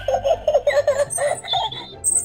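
Giggling laughter: a quick run of short laughing pulses lasting about a second.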